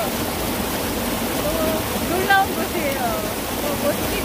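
Steady rush of a small mountain stream flowing over rocks, with people's voices over it and a short loud voiced burst about halfway through.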